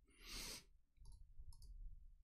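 A short rush of noise just after the start, then several faint clicks of computer keys being typed.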